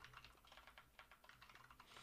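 Faint computer keyboard typing: a quick run of light keystrokes.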